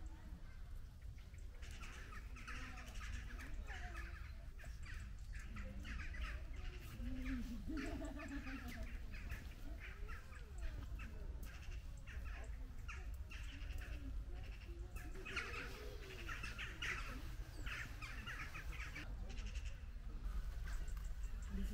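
Birds chattering and calling continually, with a few lower drawn-out calls from goats in the middle and later part, over a steady low rumble.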